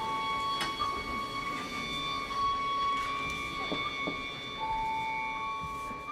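Soft orchestral music of long held high notes, two tones overlapping and taking turns.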